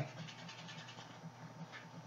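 A small dog whining faintly.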